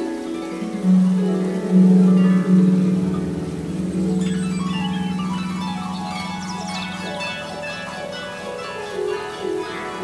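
Solo harp playing slow plucked notes that ring and fade, with a deep low note sounding about a second in and sustaining under higher notes.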